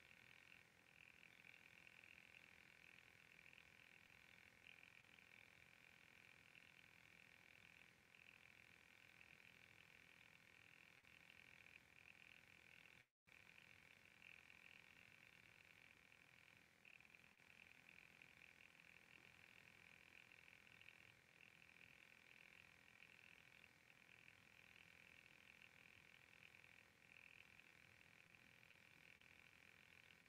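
Near silence: faint steady room tone with a thin high hiss, cutting out completely for a split second about thirteen seconds in.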